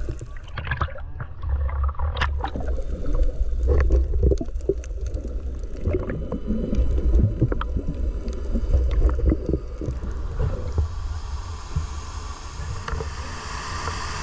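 Camera held in and under water: a muffled low rumble with gurgling and scattered splashes. About eleven seconds in, this gives way to a brighter, steady rush of water.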